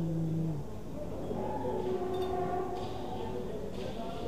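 Drawn-out voices over the general hum of an indoor market: a low held vocal tone that fades out within the first second, then a higher drawn-out call in the middle, with a couple of faint clicks.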